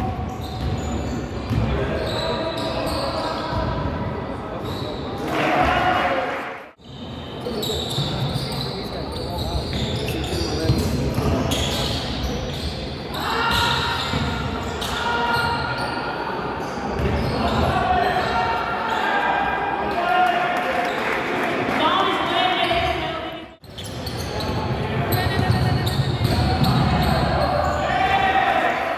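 Basketball game sound on a hardwood court: the ball bouncing as it is dribbled, with players calling out, echoing in a large sports hall. The sound breaks off briefly twice.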